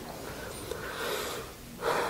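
A man breathing close to a microphone during a pause, with a louder, sharper intake of breath near the end.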